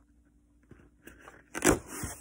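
Near silence, then about a second and a half in a short, loud crunch of handling noise as the cardboard doll box is moved against the phone's microphone.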